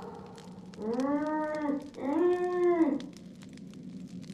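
Two long, drawn-out vocal moans, each about a second, the pitch rising and then falling.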